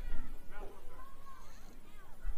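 A high-pitched voice calling out in a drawn-out, wavering tone that slides up and down in pitch, over faint voices around a youth baseball field.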